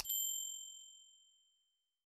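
Notification-bell 'ding' sound effect, as used in subscribe-button animations: a short mouse-click at the very start, then a single bright, high chime that rings out and fades away over about a second and a half.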